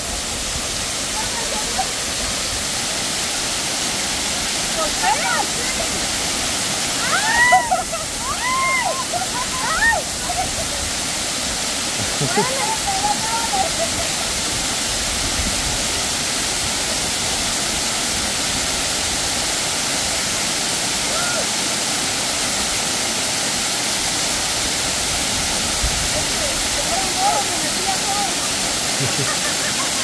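A waterfall pouring onto rocks and a shallow pool: a steady, even rush of falling water. A few brief high voices break in over it now and then.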